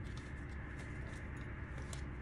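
Faint light ticks and rustles of tarot cards being handled and drawn from a deck, over a steady low room hum.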